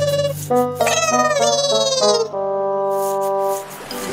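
A comic 'sad trombone' brass cue: a few falling notes, then one long held low note that cuts off near the end. It is the cartoon's signal for a letdown.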